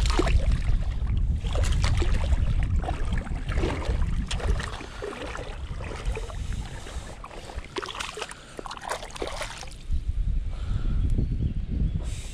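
Water splashing and sloshing as a small hooked sea bass thrashes at the surface while it is played in and grabbed by hand, with the loudest splashes at the start and again about eight to nine seconds in. A steady low rumble of wind on the microphone runs underneath.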